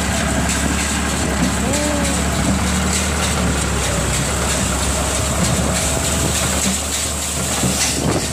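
New Holland T55 tractor's diesel engine running steadily under load, driving a working Massey 20 small square baler as it picks up rice straw.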